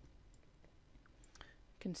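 A few faint computer-mouse clicks over quiet room tone.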